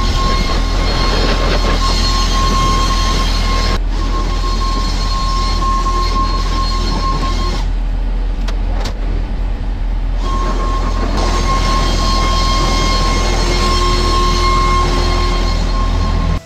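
Tractor engine running steadily, heard from inside the cab, with a heavy low rumble and a steady high whine over it. The whine drops out for a moment about four seconds in and again for a couple of seconds midway.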